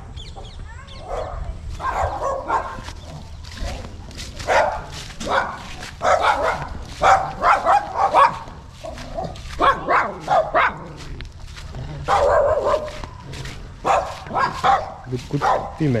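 A man's voice talking through most of the stretch, with a dog barking among it.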